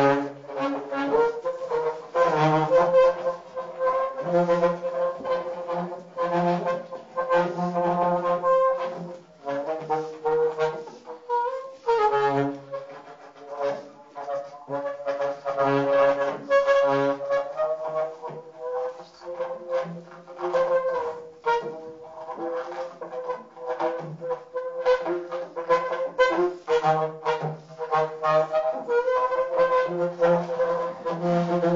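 Saxophone played in free improvisation: held notes that bend slightly in pitch, broken by short gaps. A second, lower tone sounds beneath them at times, with many short clicks.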